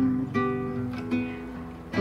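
Acoustic guitar accompaniment to a devotional song, a few quieter plucked notes in the pause between sung lines. A woman's held sung note fades out just at the start.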